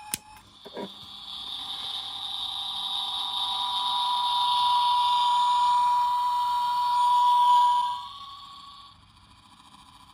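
Hallmark Keepsake Star Trek transporter chamber ornament playing its transporter beam sound effect through its small built-in speaker: a shimmering tone that swells for about seven seconds, drops off sharply about eight seconds in and is gone a second later. The ornament is working again after its connections were resoldered. A click and a light knock come near the start as it is handled.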